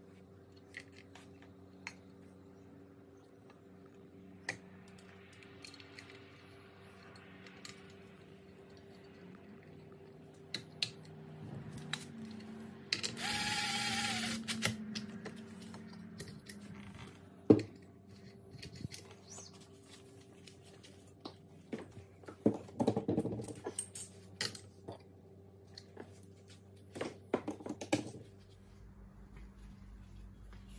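Handling sounds from a lawnmower recoil starter at a workbench: scattered clicks and small clatters, with one sharp knock. About halfway through there is one loud hiss lasting about a second and a half. A faint steady hum runs underneath.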